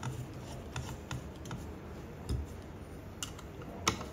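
Light scattered clicks and taps of a precision screwdriver working the screws that hold a 3D printer's metal heat bed, tightened crosswise across the corners; a dull knock comes a little past halfway, and a sharper click near the end.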